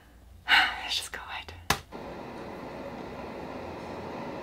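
A woman's breathy whisper about half a second in, followed by a few small clicks, the sharpest near the two-second mark. After that comes a faint, steady hum.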